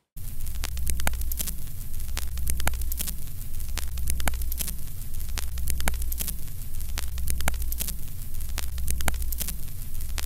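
Vintage film-projector countdown sound effect: a steady mains-style hum under crackle and static, with a sharp click repeating a little faster than once a second.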